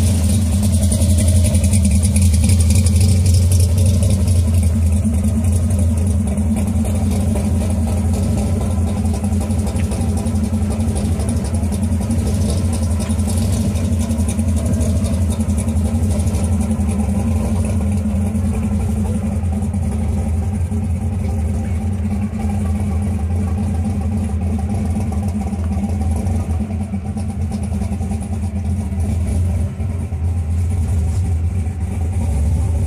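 Supercharged V8 of an IROC Camaro, a large blower standing up through the hood, running at a steady idle with a deep drone as the car creeps away. It grows a little quieter near the end.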